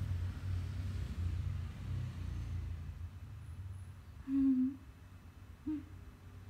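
A short, low hummed "mm" from a voice about four seconds in, and a briefer one near the end, over a faint low rumble.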